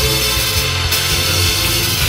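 Worship band music: an instrumental passage of a praise song, with a strong steady bass and no singing.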